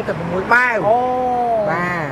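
A man's voice drawing out one long, high, whiny vowel for about a second, its pitch rising at the start and again at the end.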